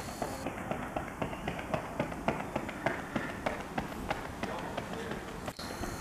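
Running footsteps: a runner's shoes striking a synthetic track in quick, even strides, about three to four footfalls a second.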